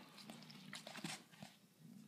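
Newborn kittens nursing against their mother cat: faint, scattered soft clicks and rustles, close to silence.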